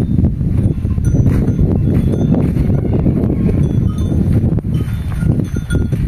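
Small stationary single-cylinder diesel engine running steadily with a rapid, dense knocking, loud and close. This is the engine that drives a forage chopper.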